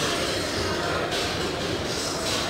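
Steady store ambience: background music under indistinct voices.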